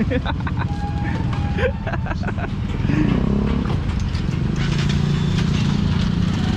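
Motorcycle engine of a Honda tricycle (motorcycle with sidecar) running at idle. Its note rises about halfway through and holds higher, with voices around it.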